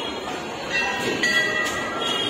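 A steady high-pitched tone, with several pitches held together, starts about two-thirds of a second in and holds over a busy background noise.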